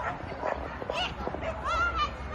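A dog giving a string of short, high yips and barks, with one longer rising yelp near the end.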